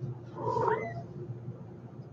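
A young kitten mewing once, a short call that rises in pitch about half a second in.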